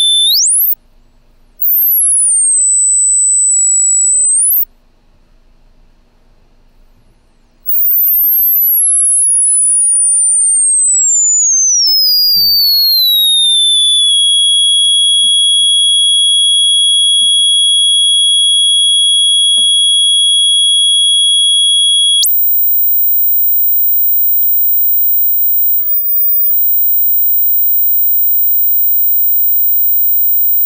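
Pure sine tone from a Max patch's oscillator, its pitch set by mouse position: a high whistle glides down and holds, cuts out for a few seconds, then falls from very high to a steady high tone and jumps to a very high steady tone about two-thirds of the way through. The mouse-to-frequency scaling is misbehaving, so the pitch sits far above the intended 30 to 2000 Hz range.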